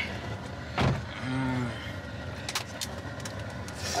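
Steady low hum inside a car cabin, with a sharp thump about a second in, a short low hum from a person just after it, and a few light clicks later on.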